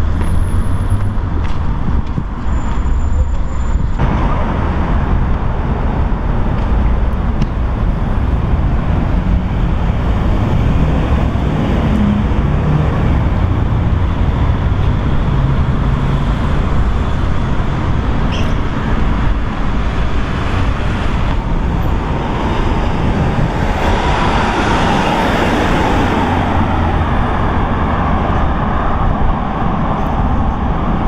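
Road traffic on a busy city street: a steady rumble of cars and buses, with one passing vehicle's whine rising and falling about three quarters of the way through.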